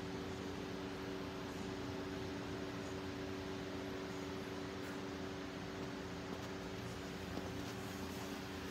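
Steady room tone: a low, even hum with two steady tones and a faint hiss beneath, with no distinct events.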